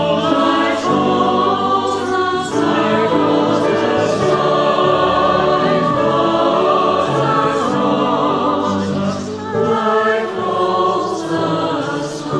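Mixed choir of men's and women's voices singing with piano accompaniment.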